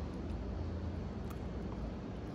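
Quiet outdoor background: a steady low hum with a faint click or two, no clear event.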